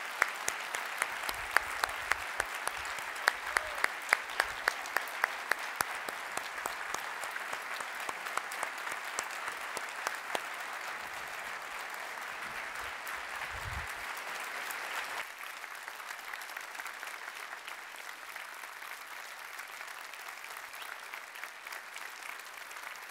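A large audience applauding steadily, with some loud single claps standing out in the first half; the applause eases a little about two-thirds of the way through.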